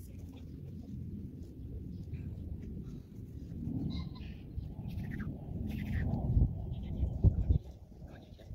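Thuds and rustling from a Labrador retriever moving on the grass right beside a ground-level microphone, with a low rumble throughout and the heaviest thumps near the end. Faint bird chirps sound now and then in the background.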